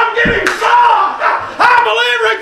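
A preacher's voice shouting in long, pitched, half-sung phrases, with the congregation calling out. A dull low thump comes about a quarter second in.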